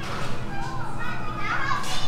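Children's voices calling and chattering in a concrete corridor, a high-pitched call standing out near the end.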